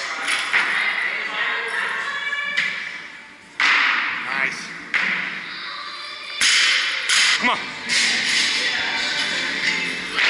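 Loaded barbell with bumper plates knocking and clattering as a clean and jerk is lifted: several sudden impacts, the loudest about a third and two-thirds of the way in, over background music and gym voices.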